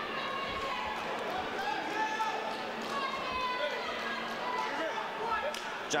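People talking in a large hall over a low steady hum, with a few short knocks near the end.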